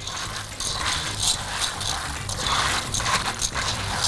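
Small dry cut macaroni being stirred with a silicone spatula in a pot as it fries in a little oil to brown: a continuous, irregular rattling and scraping of the pasta pieces against the pot.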